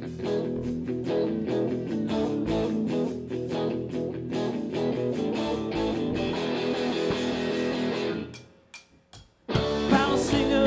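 Live rock band, with guitar and drums, playing an instrumental passage that stops dead about eight seconds in. A short break follows, with two sharp hits, and the full band crashes back in just before the end.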